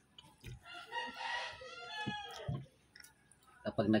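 Rooster crowing once, one long call of nearly two seconds starting about a second in. A man starts speaking near the end.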